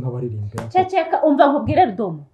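Only speech: people talking in a small room, with no other sound.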